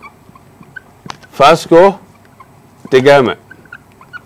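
A man speaking two short phrases with a wavering pitch, about a second and a half in and again about three seconds in, with pauses between.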